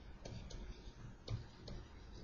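Faint, irregular clicks of a stylus tapping on a pen tablet while handwriting is written, four clicks over a low steady hum.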